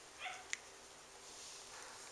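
A cat gives one short, faint meow about a quarter second in, followed by a single small click; the rest is quiet.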